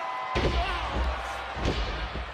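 A wrestler's body slammed onto the ring canvas: a sudden heavy thud about a third of a second in, followed by a low boom that lingers for about two seconds.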